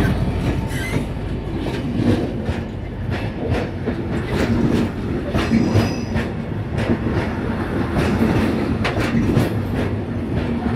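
Freight train hauled by a GBRF Class 66 diesel rolling through, its wheels clicking over rail joints in a quick, uneven series over a steady low rumble.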